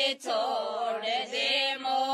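Women singing a folk song with no instruments, in long held notes with a wavering, ornamented melody.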